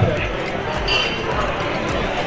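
Busy restaurant din: many voices chattering at the tables over faint background music, with a dull knock right at the start.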